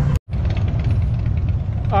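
Vehicle engines idling with a steady low rumble. The sound cuts out completely for a moment a fraction of a second in.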